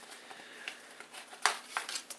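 Cardboard face form being pried out of a rubber gas mask: faint scraping and rustling of cardboard against rubber, with a sharp click about one and a half seconds in.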